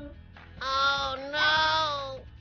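A high voice sings two long held notes, one after the other, over quiet background music.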